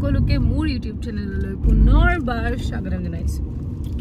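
A woman talking inside a moving car's cabin over its steady low road rumble, with a brief, louder deep rumble about halfway through.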